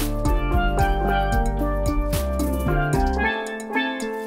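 A steel pan duet, a double tenor pan and a single tenor lead pan, playing a quick melody of struck ringing notes. Low bass notes and a drum beat run underneath, and the bass stops near the end.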